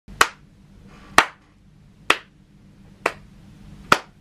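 A person clapping their hands slowly, five sharp single claps about one a second.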